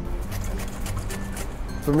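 A few light strokes of Brussels sprouts being shaved on a Japanese mandoline into a stainless steel bowl, under background music with steady low held notes.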